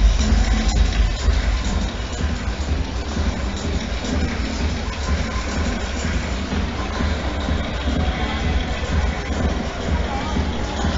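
Electronic dance music with a heavy, steady bass.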